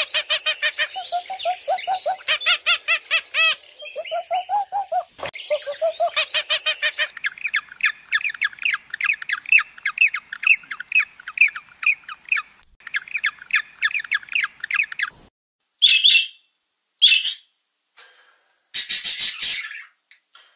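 A run of animal calls in several kinds. Repeated pitched calls that rise and fall fill the first seven seconds or so. Fast, high chirping follows for about eight seconds, then three short, high bursts come near the end.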